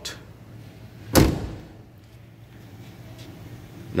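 A door of a 1979 Toyota Corolla KE30 is slammed shut once, a single solid thud about a second in.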